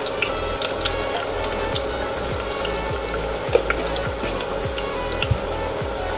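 Garlic sizzling in hot oil in a stainless steel pot, with scattered small pops and crackles as whole black peppercorns are added. A steady faint hum runs underneath.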